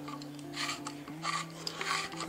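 Soft background music of sustained low notes that change pitch a couple of times, with a few faint, short rasping noises over it.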